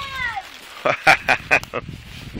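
A child's voice: a drawn-out, rising-then-falling "wow", then a quick run of short laughs.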